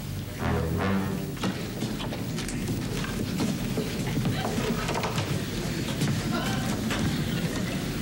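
A low, held music cue ends in the first second and a half. It gives way to a steady wash of studio audience applause and laughter.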